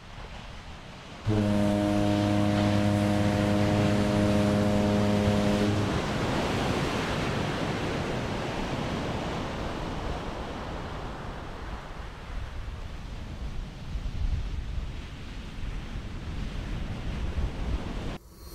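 A ship's horn sounds one long, steady, deep blast starting about a second in and lasting some four and a half seconds. Beneath it is a steady rush of surf and wind that carries on after the horn and slowly fades.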